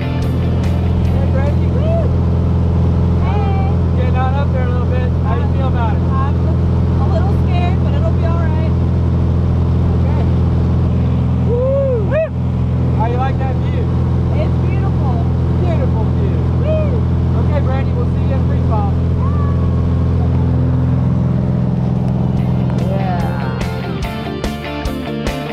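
Engine and propeller of a single-engine high-wing jump plane, droning steadily as heard inside the cabin during the climb, with voices talking over it.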